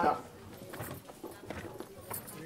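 A few light footsteps of a man's shoes on a stage platform, with spaced, sharp knocks over a quiet background.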